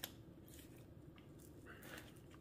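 Near silence with faint, soft handling sounds of fingers working between the skin and meat of a raw turkey breast, and a brief click at the very start.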